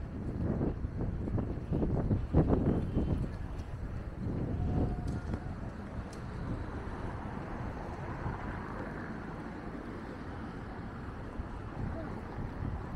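City street traffic at a road junction: passing vehicles, loudest in the first five seconds, then a steadier background hum of traffic.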